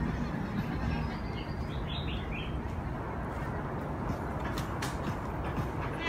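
Outdoor ambience on a forest trail: a steady low rumble of wind and movement on the microphone, with a short bird chirp about two seconds in and a few light clicks near the end.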